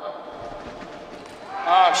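Low, steady arena background noise with no distinct event, then a man's commentary voice starting near the end.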